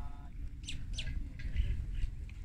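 A small bird calling with two short, quick falling chirps close together, over a steady low rumble.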